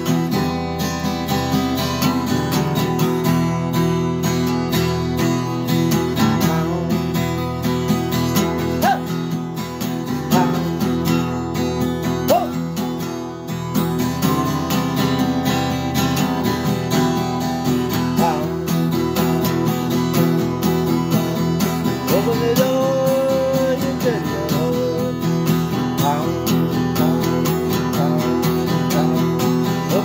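Acoustic guitar strummed steadily, chords ringing on throughout as a song accompaniment.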